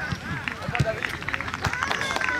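A group of soccer players clapping their hands. The claps are scattered at first and grow denser through the second half, under several voices calling out.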